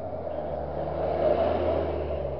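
A vehicle passing close by a stopped car, its engine and tyre noise swelling to a peak about a second and a half in and then easing off.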